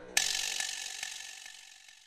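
A rapid mechanical ratcheting clatter starts suddenly and fades away over about two seconds.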